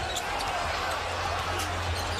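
Steady arena crowd noise with a basketball being dribbled on the hardwood court, a few short knocks standing out.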